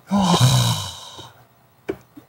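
A man's long, breathy, sigh-like exhalation, his voice falling in pitch over about a second. A single short click near the end.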